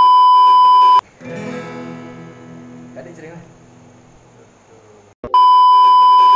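A loud, steady, high-pitched test-tone beep, the kind that goes with TV colour bars, lasts about a second, stops, and sounds again for about a second near the end. In between comes a much quieter stretch of acoustic guitar and a voice.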